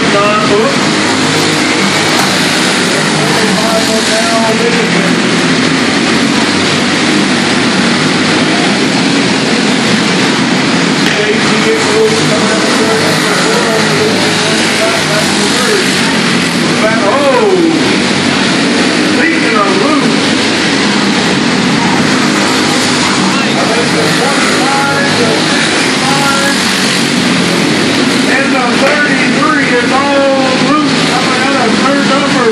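Several small dirt-track race cars' engines running together at racing speed, loud and steady, with pitch rising and falling as cars rev and pass, heard inside an enclosed arena.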